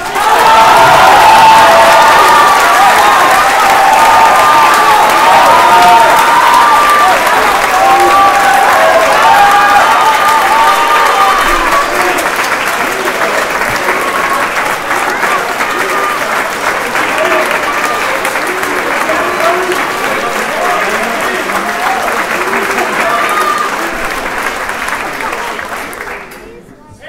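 Theatre audience applauding, with voices calling out over the clapping through roughly the first half; the applause eases and tails off near the end.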